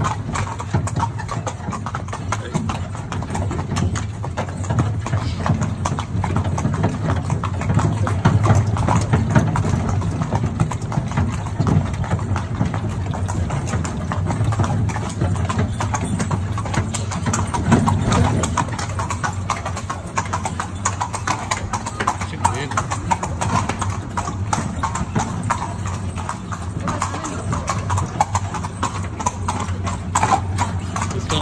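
Horse's hooves clip-clopping steadily as it pulls a carriage, over a steady low rumble from the moving carriage.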